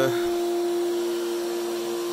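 Home-built CNC router running, its spindle and motors giving a steady machine noise with a constant hum.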